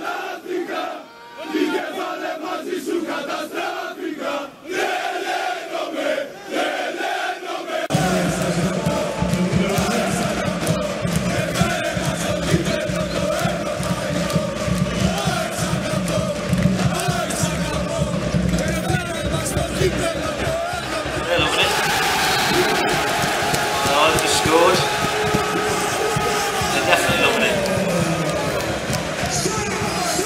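Large crowd of football ultras chanting together in unison. About eight seconds in it changes to a fuller, louder crowd chanting and singing that carries on to the end.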